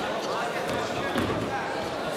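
Dull thuds of wrestlers' feet and bodies on a wrestling mat as one shoots in for a leg takedown, with voices calling out over them.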